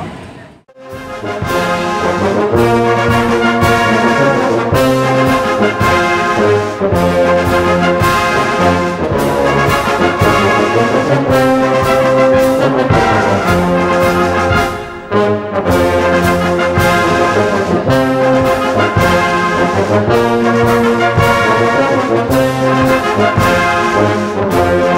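Brass music with a steady beat. It starts after a brief drop to silence just under a second in and has a short break in the middle.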